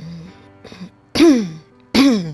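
A person clearing their throat loudly twice, about a second apart, each falling in pitch, over soft background music.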